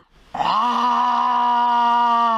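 A person's voice giving one long, held mock lion roar, starting about a third of a second in and staying at a steady pitch.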